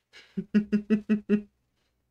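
A man laughing: a short breath in, then five quick, even 'ha' pulses at about five a second.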